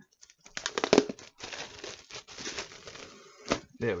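Plastic wrap being torn and peeled off a cardboard box, crinkling in bursts that are loudest about a second in and then trail off. A single sharp tap comes about three and a half seconds in.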